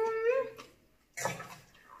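A short, high-pitched hummed vocal sound lasting about half a second, its pitch rising slightly and then falling, followed just past the middle by a brief breathy noise.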